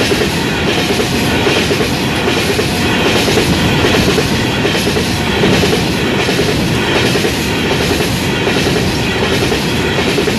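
Freight train of coal hopper wagons rolling past at close range: a steady, loud rumble of wagons with wheels clattering over the rails.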